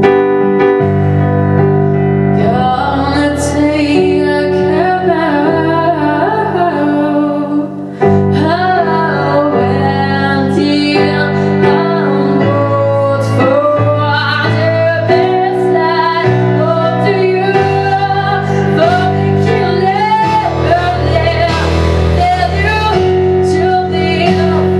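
A young man singing a pop ballad in a high voice, accompanying himself on a digital piano with sustained chords. The voice slides and bends between notes, with a short break about eight seconds in.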